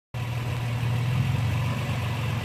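A vehicle engine idling, a steady low hum.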